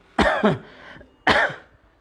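A man coughing twice, about a second apart.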